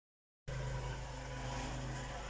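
A steady low hum with background hiss, starting abruptly about half a second in after a moment of silence.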